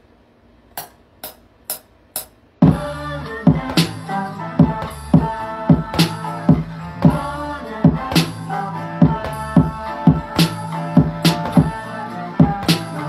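Four evenly spaced clicks of a count-in, then a hip-hop beat starts suddenly: a looped Latin music sample over programmed drums with a steady kick and snare, played back from FL Studio.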